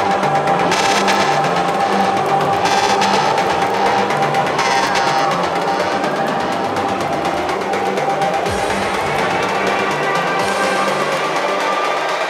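Afro house / tech house DJ mix in a percussion-led stretch: drums over a held synth tone, with swells of high hiss about every two seconds early on. A few seconds in, a rising and a falling pitch sweep cross. There is little deep bass until the end.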